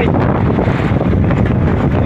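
Loud, steady wind buffeting the microphone, a dense low rumble with no clear rhythm.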